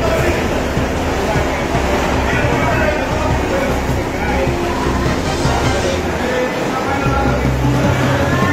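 Microburst windstorm with heavy rain: a dense, steady roar of gusting wind and downpour, with wind rumbling on the microphone. Music and indistinct voices are mixed in.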